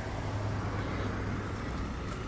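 Outdoor background noise with a steady low hum, like traffic or an idling vehicle in the distance.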